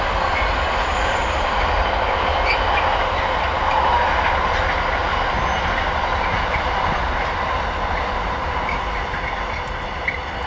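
Long container freight train rolling past, a steady rumble of its wagons on the rails, easing off a little near the end as the last wagons go by.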